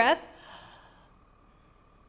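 A woman's deep breath drawn in near a microphone, a soft hiss lasting about a second that fades, then quiet room tone.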